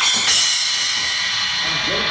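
A Sabian cymbal struck twice in quick succession with a drumstick, then ringing on with a bright, slowly fading shimmer.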